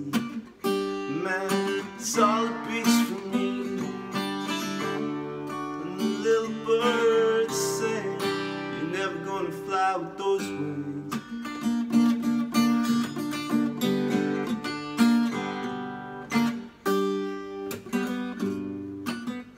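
Acoustic guitar strummed in a steady rhythm, with a man's voice singing over it in places.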